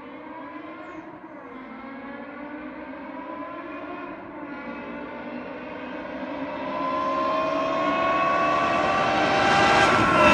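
Straight-piped BMW E60 M5's 5.0-litre V10 approaching under acceleration, its exhaust note rising steadily in pitch and growing much louder as the car nears, with a brief dip about four seconds in.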